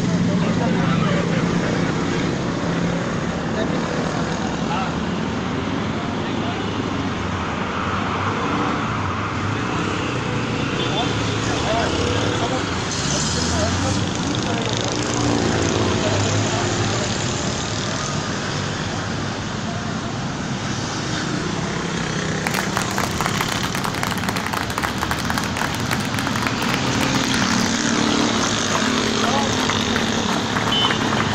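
City road traffic noise with indistinct voices nearby. From about two-thirds of the way in, a crackling noise on the microphone is added.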